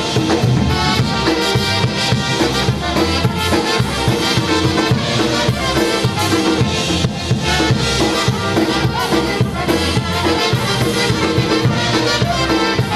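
A polka band playing a polka for dancing, with a steady, even beat.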